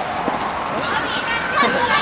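Young men laughing and talking, with voices loosely overlapping.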